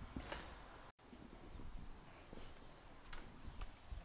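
Low, steady background noise with a few faint, light clicks about three seconds in. The sound cuts out completely for a moment about a second in.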